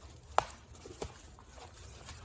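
Two sharp clicks about half a second apart, the first the louder, as a stroller's harness strap and its fitting are handled and worked through the slot in the seat back.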